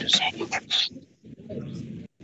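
Indistinct voices over a video-call connection, with a short pause about a second in.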